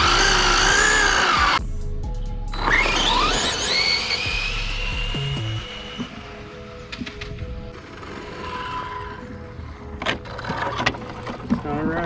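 Brushless electric motor of a Losi 22S no-prep RC drag car whining with a wavering pitch, then launching about two and a half seconds in: the whine sweeps steeply up in pitch as the car accelerates away and fades out over the next few seconds as it runs off.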